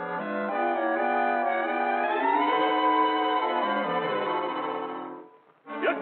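Orchestral cartoon score music with brass, playing held chords that climb about two seconds in and then fade out a little after five seconds.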